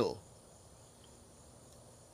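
Faint, steady high-pitched chorus of crickets, after the tail of a spoken word at the very start.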